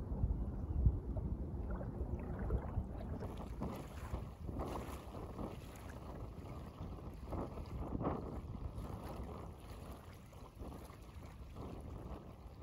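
Wind buffeting the microphone, strongest in the first few seconds, over small lake waves lapping and splashing in the shallows of a sandy shore.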